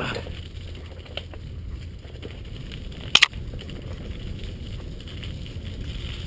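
A mountain bike rolling down a dirt singletrack, its tyres crunching over gravel and leaves with a steady low rumble and rattle, picked up by a camera on the handlebars. A sharp double clack sounds about three seconds in.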